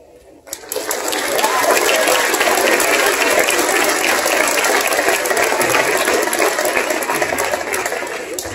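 Audience applause, breaking out about half a second in as a dense mass of clapping that carries on steadily.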